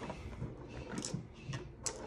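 Light handling of small plastic cosmetic tubes: a few faint clicks and taps, with one sharper click just before the end.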